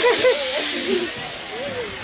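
A rushing hiss that swells in the first second and then thins out, with a man's short laughing vocal sounds over it.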